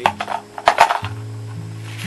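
Plastic clattering and crinkling from handling the plastic toy cups and their packaging: a cluster of sharp clacks in the first second, over steady background music.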